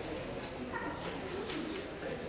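Soft organ prelude in a quiet passage, a few brief held notes over low background murmur.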